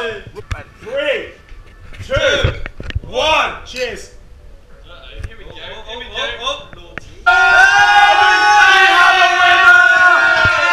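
Young men shouting and cheering in short bursts over a drinking race, then a song with singing cuts in suddenly about seven seconds in and plays loudly.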